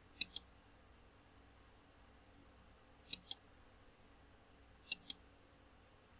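Computer mouse clicks: three pairs of short sharp clicks, one pair near the start, one about three seconds in and one about five seconds in. Each pair is quick, with a faint low hum underneath.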